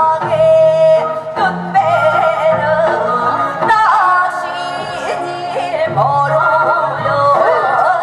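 Female gukak singers performing a Korean folk-style song through stage microphones over an amplified backing track, the voice sliding and bending between notes.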